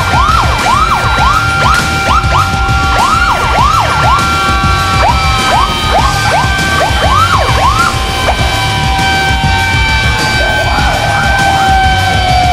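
Several sirens yelping in quick rising-and-falling sweeps, two or three a second and overlapping, dying away after about eight seconds and returning briefly near the end, over loud background music.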